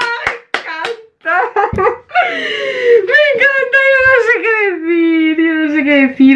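A young woman laughing and clapping her hands a couple of times, then letting out a long, wavering wordless cry of delight that slowly falls in pitch.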